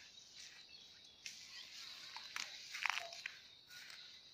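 Faint dry crunching of a heavy draught horse moving its hooves and feeding in dry leaf litter and twigs. The crackles come scattered, with a louder cluster a little before three seconds in.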